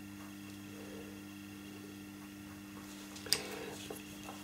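Steady low hum of room tone. About three-quarters of the way in comes a sharp click and a moment of light rattling as one pastel pencil is set down and another picked up.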